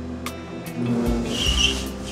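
Background music with a steady beat, and a brief high squeal about one and a half seconds in.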